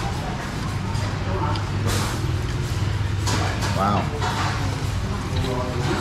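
Small-restaurant room sound: background voices over a steady low hum, with a few short clatters about two and three seconds in, and a man saying 'wow' a little before the end.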